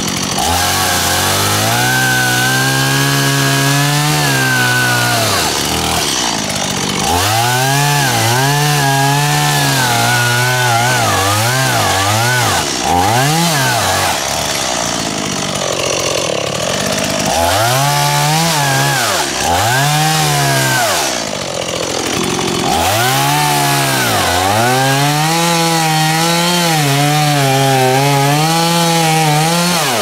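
Stihl MiniBoss two-stroke chainsaw cutting cycad pups and roots off at ground level, revved up for runs of a few seconds and dropping back to idle between cuts. Around the middle there are a few quick throttle blips.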